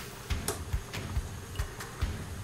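Pot of potatoes at a rolling boil on a gas burner, with a low rumble and a few light clicks as a fork pokes the potatoes to test whether they are cooked.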